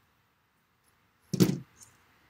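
A pair of metal-bladed scissors set down on a wooden tabletop: one sharp clatter about one and a half seconds in, followed by a small knock.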